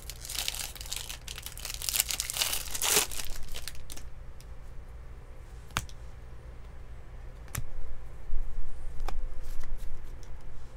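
Foil wrapper of a baseball card pack tearing open and crinkling for the first four seconds or so, followed by three sharp clicks as the stack of cards is handled.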